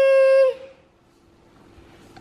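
A toddler's voice holds one long, high-pitched call and breaks off about half a second in. Faint room tone follows.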